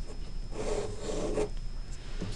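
Pen scratching on a paper worksheet as a word is written, with one longer rubbing stroke lasting about a second near the middle as the answer is circled.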